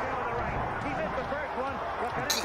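Boxing match broadcast audio: arena crowd noise with indistinct voices, at a steady level.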